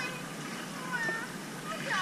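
A frightened young child whimpering softly: a faint high whine at the start and a short, high-pitched whimper about a second in.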